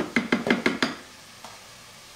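Metal spoon tapping quickly against a plastic food processor bowl, about seven sharp taps in the first second to knock bulgur wheat off the spoon, then it stops.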